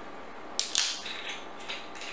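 Screw cap of a wine bottle being twisted open, its aluminium seal breaking with a sharp crackle a little under a second in, followed by a few faint clicks as the cap turns.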